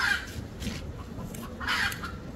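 A chicken calling twice: two short, high clucks about a second and a half apart.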